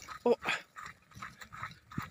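A short "oh" about a quarter of a second in, then faint, irregular footsteps scuffing on a dirt track, with a sharp click at the very end.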